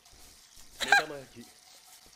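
A single short vocal sound from a person about a second in, lasting about half a second.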